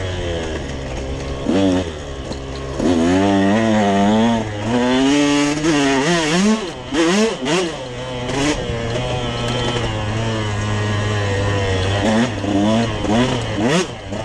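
Dirt bike engine being ridden on a rough trail, its pitch rising and falling again and again with the throttle. About two-thirds of the way in it settles to a steady lower note for a few seconds, then revs up and down again near the end.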